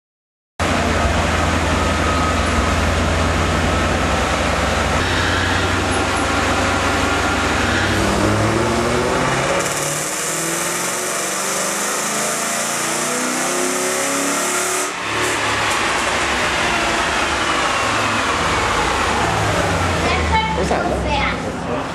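A 1994 Lincoln Mark VIII's 4.6-litre DOHC V8 makes a dyno pull with its driven wheels spinning the chassis dynamometer rollers. The engine runs low and steady for several seconds, then climbs in pitch as it winds up to high revs. About fifteen seconds in the throttle is lifted, and the engine and rollers coast down with a whine that falls in pitch.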